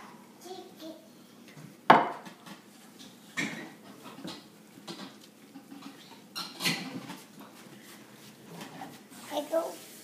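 A plate knocking and clattering against a tabletop as a toddler handles it. The loudest knock comes about two seconds in, with a few lighter ones later.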